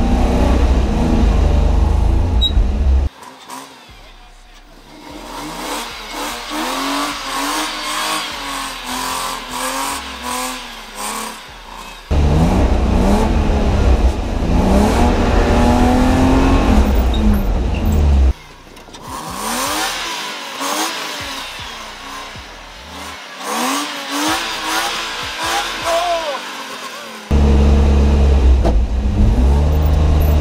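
A drift car's engine heard from inside the cabin, revving up and falling back again and again through the drift runs. Abrupt cuts switch between quieter stretches of revving and louder stretches carrying a heavy, steady low rumble, at the start, in the middle and near the end.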